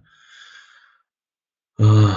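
A man's faint breath between sentences, airy and brief, followed by silence; speech resumes near the end.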